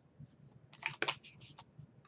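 A tarot card deck being handled: a few faint clicks and brief scratchy sounds of cards sliding as one card is drawn from the deck and laid on a cloth-covered table.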